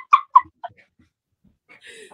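High-pitched laughter trailing off in a few short squeaks, then a faint breathy laugh near the end.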